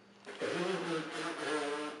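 A person's drawn-out, breathy vocal sound, starting about a quarter second in and lasting about a second and a half.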